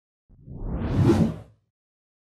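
Whoosh sound effect for an animated logo intro, swelling and rising in pitch over about a second with a low rumble beneath, then cutting off about a second and a half in.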